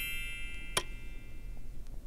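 Subscribe-button overlay sound effect: a bright chime ringing and fading away, with a single sharp mouse click just under a second in.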